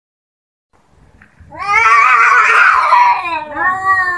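Domestic cat yowling: one long, loud, wavering call of about two seconds, then a second, shorter call starting just before the end.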